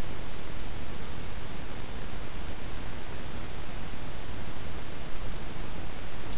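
Steady hiss of the recording's microphone noise, even and unchanging, with no other sound.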